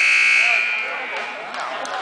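Gym scoreboard buzzer sounding time at a wrestling match: a steady, high-pitched buzz that dies away about a second in, with crowd voices under it.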